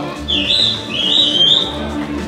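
Background music with a steady low beat, over which two high whistles sound, each rising and then holding, about half a second in and again about a second in.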